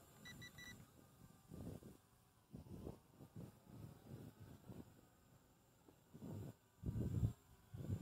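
Three quick, high electronic beeps right at the start: the drone's low-voltage (LVC) battery warning. After that, only faint, irregular low rumbles of wind on the microphone.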